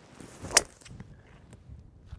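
Golf driver swung from the tee: a short whoosh of the swing, ending in the sharp crack of the clubhead striking the ball about half a second in.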